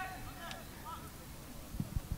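Faint, distant calls and shouts from players on a football pitch over a low outdoor rumble, with a couple of short low thumps near the end.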